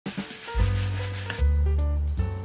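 Chopped kimchi sizzling in oil in a hot pan as it is stir-fried with a wooden spatula, with background music whose low bass notes come in about half a second in. The sizzling stops a little past the middle, leaving the music.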